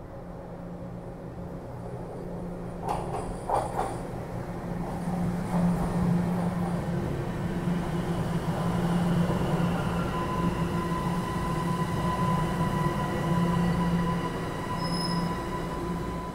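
TTC subway train pulling into an underground station, its rumble on the rails building over the first few seconds, with a few sharp clacks about three seconds in. A thin steady whine sets in from about ten seconds in.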